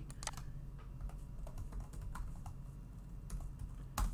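Computer keyboard being typed on: a handful of faint, irregular keystrokes over a low steady hum.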